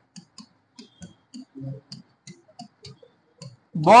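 Marker pen writing on a board: a string of short, irregular clicks and taps as the tip strikes and lifts between letters.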